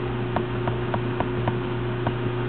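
Rapid, even ticking, about five or six ticks a second, from the keys of a Velleman HPS10SE handheld oscilloscope as its timebase is stepped up setting by setting, over a steady low electrical hum.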